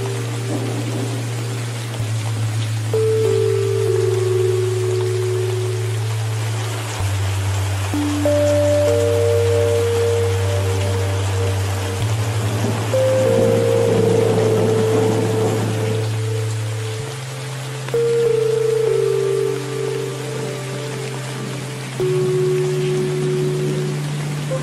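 Slow relaxation music of long held chords, the bass note changing about every five seconds, over a steady hiss of rain.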